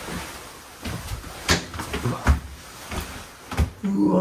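Scattered clacks and knocks, with a heavier thump a little over two seconds in, as a folding bathroom door is opened.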